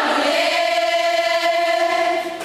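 A choir singing, holding one long chord.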